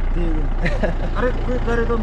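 A vehicle's engine idling steadily with a low hum, with a man's voice talking over it.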